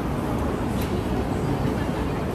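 Busy outdoor street-market ambience: a steady low rumble with a faint murmur of voices and a couple of light clicks.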